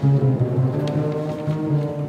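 Chamber ensemble of flute, clarinet, accordion, saxophone, double bass and piano playing, led by a low line of held notes that changes pitch every half second or so.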